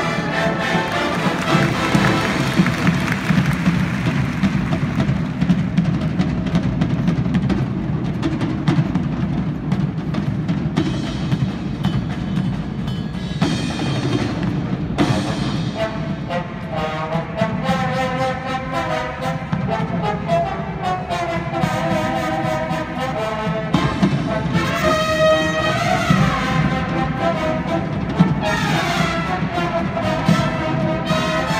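A high school marching band playing live: brass, including sousaphones, over a steady drum beat, with percussion from the pit. The brass lines stand out more clearly from about halfway through.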